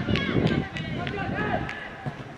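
Boys' voices calling and shouting on an open football pitch during play, several short overlapping calls, with a few short knocks in the first second.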